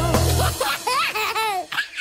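A baby's giggling laughter in short bursts over the tail of a children's song; the backing music drops out about half a second in, leaving the laughter.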